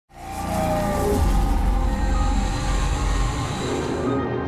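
Logo intro sound design with music: a low rumble and a hissing whoosh that swell in at the start, with a short falling tone in the first second. The high hiss cuts off just before the end.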